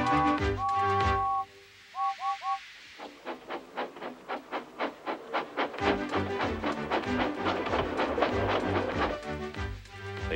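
Background music, then a two-note steam locomotive whistle: one held blast followed by three quick toots. Rhythmic steam-engine chuffing follows, and the music comes back in under the chuffing about halfway through.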